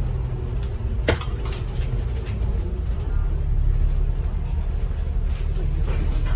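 Bus interior running noise: a steady low rumble of the moving bus, with a single sharp knock about a second in.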